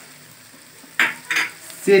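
Chicken keema frying gently in a nonstick wok, a low, even sizzle, with two short, sharp sounds about a second in.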